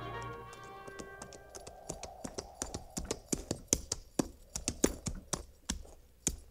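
Radio-drama sound effect of horses' hooves clopping at a walk on hard ground: irregular sharp clops that start about a second and a half in and grow louder. The tail of an orchestral music bridge fades out at the start.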